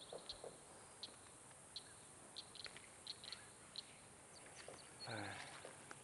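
Faint, scattered short high chirps from a small bird over a quiet background hiss, with a brief rapid trill near the end.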